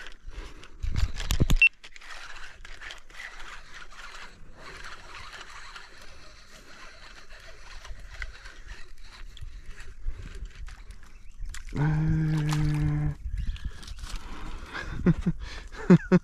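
Quiet outdoor ambience in a small wooden boat, with scattered small knocks and handling noises and a brief low rumble about a second in. A faint high whine runs for a few seconds in the middle. About three-quarters through, a low steady hum is held for about a second.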